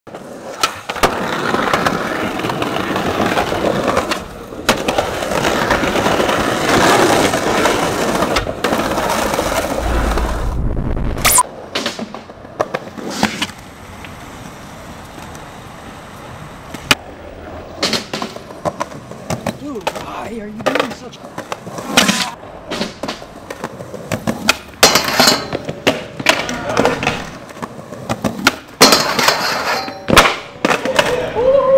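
Skateboard wheels rolling over street pavement for the first ten seconds or so, stopping abruptly, followed by repeated sharp pops, clacks and impacts of a skateboard on concrete as tricks are tried at a stair set.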